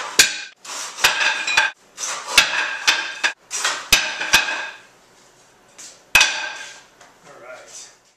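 Hand saw cutting thin wood strips in a plastic miter box: irregular strokes, each starting with a sharp knock and trailing off with the metal blade ringing. The sawing stops for a second about five seconds in, then one more loud stroke comes a little later.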